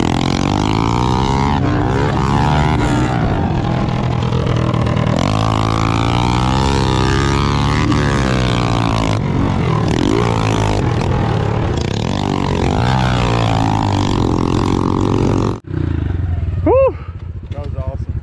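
Small four-stroke single-cylinder engine of a Honda CRF110 pit bike revving up and dropping back again and again as it is ridden hard around a dirt track, with a second pit bike running just ahead. About three-quarters of the way through, the engine sound cuts off suddenly and a quieter stretch follows.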